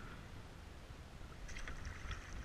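Water splashing and trickling against a kayak, over a low rumble of wind on the microphone. A brighter cluster of small splashes comes about a second and a half in.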